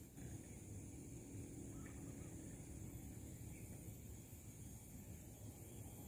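Quiet outdoor background: a faint steady low rumble under a constant thin high-pitched hum, with a couple of very faint short chirp-like sounds about two and three and a half seconds in.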